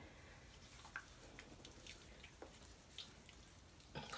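Near silence with a few faint, scattered water drips.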